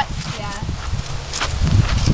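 Feet stepping and scuffing on sandy dirt as several people turn around, with irregular low thuds and rumble on the camera microphone. A brief faint voice is heard at the start.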